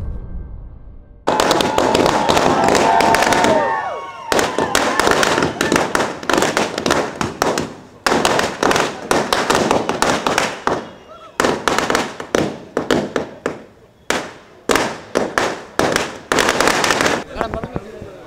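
Firecrackers going off in rapid crackling runs of sharp pops, several bursts with short gaps between them, starting about a second in. Crowd voices are heard under the crackling.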